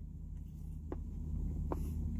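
Closed-mouth chewing of a bite of chicken sandwich, with a couple of faint mouth clicks about a second in and near the end, over a steady low hum.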